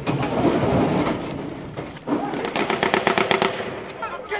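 Small-arms gunfire in a street firefight: a dense wash of noise in the first half, then from about halfway a rapid run of sharp cracks, several a second.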